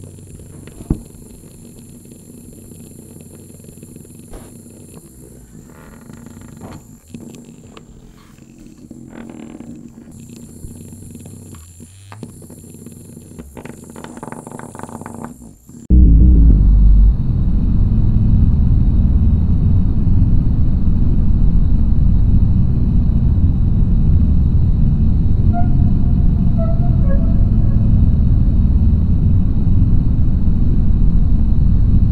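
Low room sound with a few small clicks, then an abrupt cut about halfway to a loud, steady, deep rumbling drone of dark ambience, with a few faint short tones near the end.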